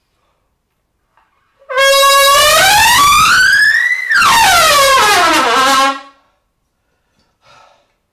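Trumpet played loud in a warm-up: a smooth upward glide of about two octaves over two seconds, a brief breath, then a glide back down to a low note.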